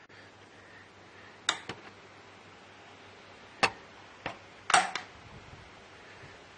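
Sharp metal-on-metal clicks from the lever hook inside a Harrison M300 lathe apron being worked against its ledge: three distinct clicks with two fainter ones between them. The hook now catches the ledge properly after the ledge was adjusted.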